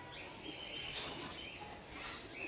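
Aviary ambience: small birds chirping with short high-pitched calls over a steady background hiss.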